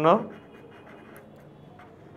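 Pen scratching faintly on paper while writing by hand, after a man's spoken word ends at the very start.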